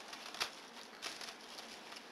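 Crumpled brown wrapping paper rustling and crinkling as it is pulled apart by hand, with a sharper crackle about half a second in.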